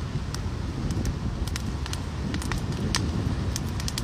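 Bonfire of upright sticks burning, crackling with irregular sharp pops, over a steady low rumble of wind on the microphone.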